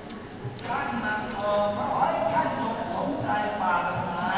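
Voices of a crowd of worshippers in the temple hall, talking over one another, with a few light clacks mixed in.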